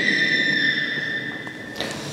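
Public-address microphone feedback: a single steady high-pitched whistle that holds one pitch and cuts off suddenly shortly before the end.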